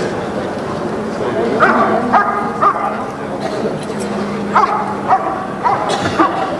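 German Shepherd barking at a helper in the blind, the hold-and-bark of a Schutzhund protection exercise. Two or three barks come about two seconds in, then four quicker ones near the end.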